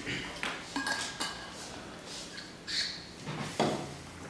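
A scattered series of light knocks, clicks and clinks as objects are handled at a wooden lectern, with a brief ping about a second in and a heavier knock near the end.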